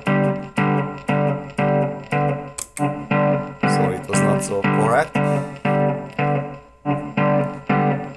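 Headless electric guitar played through a Headrush MX5 multi-effects unit: a simple one-handed riff of short repeated chords, about two a second, each dying away before the next, with a few sliding notes around the middle. It is being recorded into the looper.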